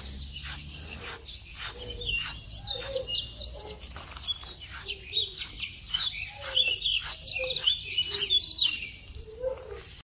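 Red fox making high-pitched chirping squeaks while being brushed, in quick runs of stepping, wavering notes that go on from about two seconds in until near the end. Short scratchy strokes of the brush through its fur run underneath.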